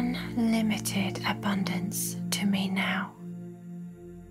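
A voice speaking over calm ambient music made of sustained steady tones; the voice stops about three seconds in, leaving only the music.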